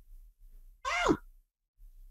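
A woman's sigh: one short, voiced breath out that falls in pitch, about a second in.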